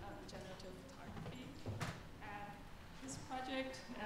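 Speech only: people talking in a room, with no other sound standing out.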